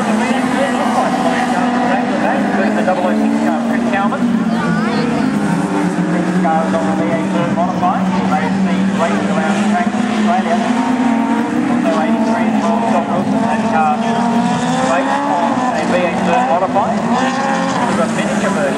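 Dwarf race cars running laps on a dirt speedway, several engines working hard with their pitch rising and falling as the cars go around.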